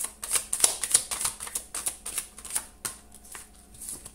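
A tarot deck being shuffled by hand: a fast, uneven run of short card clicks and flicks that thins out near the end.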